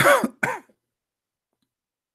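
A man clearing his throat twice in quick succession, two short voiced rasps within the first second.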